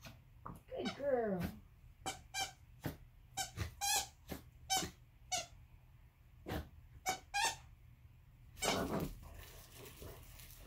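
A squeaky plush dog toy squeaked again and again as a small dog bites down on it: about a dozen short, sharp squeaks in an irregular run that stops about three-quarters of the way through.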